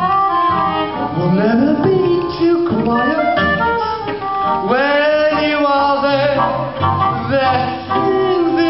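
Live music from a small acoustic band playing a slow song: a melody line of gliding, long-held notes over plucked guitar strings.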